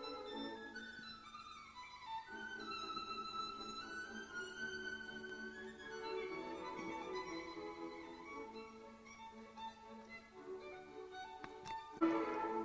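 Background music: a violin playing a slow, sustained melody, with a gliding line about a second in.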